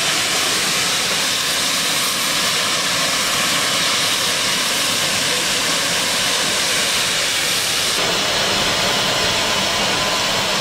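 A standing GWR Castle Class 4-6-0 steam locomotive with a loud, steady hiss of escaping steam.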